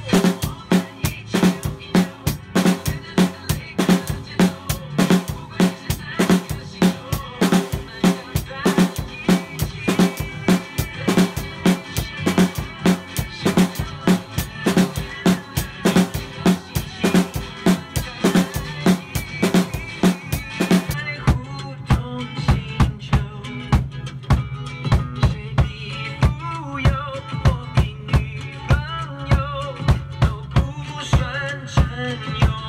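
Acoustic drum kit played in a steady groove, bass drum and snare hits with cymbals, as a drum cover along to a recorded song. About two-thirds of the way through, the cymbal wash drops back and a held low note enters while the drumming carries on.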